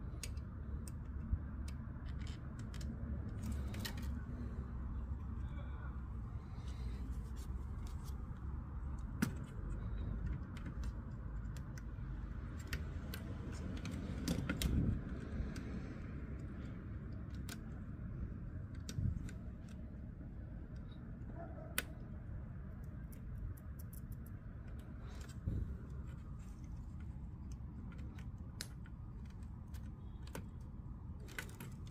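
Scattered small clicks, taps and rustles of hands handling electronics parts: ribbon cables, circuit boards and a sheet-metal CD drive assembly being fitted back into a Bose Wave radio. A steady low hum sits underneath.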